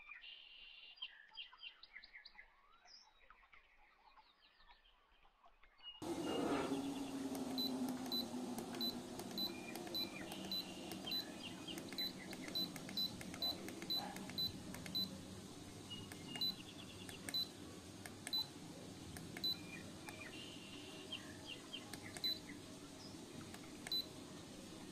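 Short, high electronic beeps, about two a second for several seconds and then more sparsely. They sit over a steady noise that comes in suddenly about six seconds in. Faint chirps, like birds, are heard before and under them.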